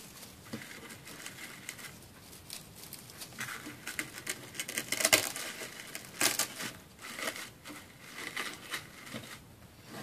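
Artificial pine picks rustling and crinkling as their stems are pushed into a floral foam block, with irregular scratchy rustles and small clicks, loudest around the middle.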